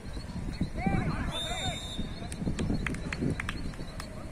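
Players' shouts and calls on an outdoor football pitch, rising and falling in pitch, over dense low thumping and rumble on the microphone. A short, steady high tone sounds about a second and a half in, and a run of sharp clicks follows in the second half.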